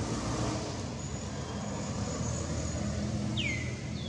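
Steady low outdoor rumble of distant road traffic. Near the end, a short high whistle-like call slides down in pitch.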